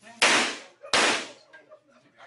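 Two gunshots about two-thirds of a second apart, each a sharp crack with a short decaying tail.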